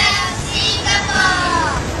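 A group of children calling out together in high voices, over background music.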